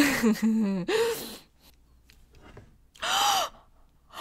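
A young woman's voice trailing off from laughter in the first second and a half, then a short breathy gasp about three seconds in.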